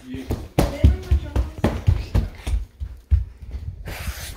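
A string of irregular low thumps and knocks, roughly a dozen over a few seconds, uneven in spacing and strength.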